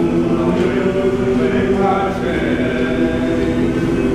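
Male-voice choir singing, holding sustained chords.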